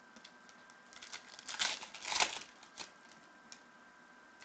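Trading card packs and their wrappers being handled on a table: crinkling and rustling that builds to two louder bursts about one and a half and two seconds in.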